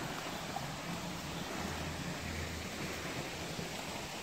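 Steady, even rush of flowing water from a spring-fed stream.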